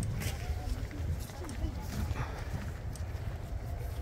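Faint, indistinct voices of people talking nearby, over a steady rumble of wind on the microphone, with a few brief clicks.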